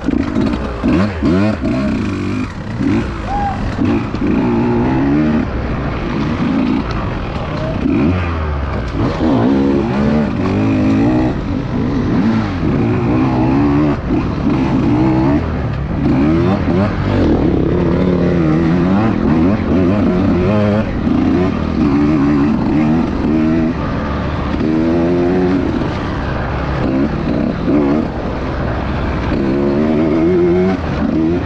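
Husqvarna TE150 two-stroke enduro motorcycle engine revving up and down constantly as the rider works the throttle at low trail speed.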